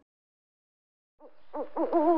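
About a second of silence, then an owl hooting in a quick run of short, arching hoots.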